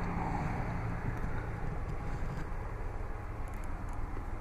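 Steady low hum and rumble of a car idling, heard inside the cabin, with a faint steady tone that fades out about halfway through.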